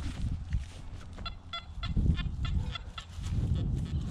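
Nokta Anfibio metal detector sounding a rapid run of short, high-pitched beeps, about four a second, as its coil is swept over a dug hole. The signal turns out to come from a nail in the hole.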